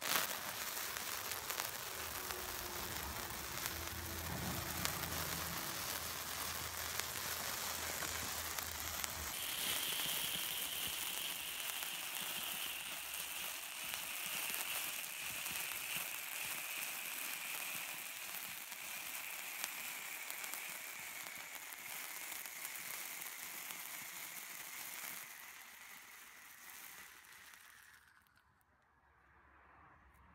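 Handheld sparkler fountain firework burning: a loud, steady crackling hiss of spraying sparks that starts suddenly. From about ten seconds in, a thin whistle runs through it, falling slowly in pitch. The firework fades near the end and cuts out as it burns out.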